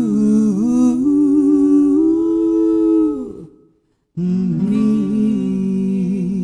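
Two male voices humming a slow closing harmony in long held notes with vibrato. The first phrase fades out about three seconds in, and after a brief silence a second held harmony begins.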